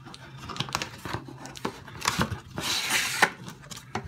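Corrugated cardboard box flaps being handled and pulled open: small scrapes and taps, then a louder rasp of cardboard rubbing on cardboard about two and a half seconds in.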